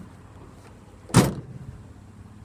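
Pickup truck tailgate of a 2017 GMC Canyon Denali swung shut, a single loud slam about a second in.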